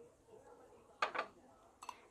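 Kitchenware being handled: a sharp double clink about a second in, with a lighter click just before the end, as a small glass bowl and a spatula are handled at the pot.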